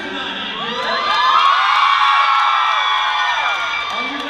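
A large crowd screaming and cheering, with many high voices whooping over one another. It swells about a second in and eases off near the end.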